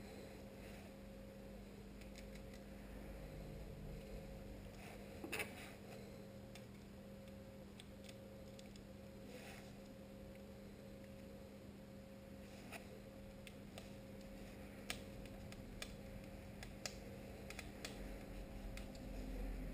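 Faint small clicks and taps of a cordless hair clipper's blade and body being handled and fitted back together, scattered irregularly with a slightly louder one about five seconds in, over a steady low hum.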